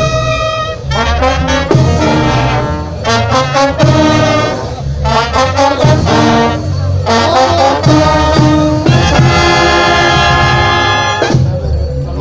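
Brass band playing loudly in the Mexican banda style, with a section of trombones and trumpets over a tuba bass line. The brass drops out near the end.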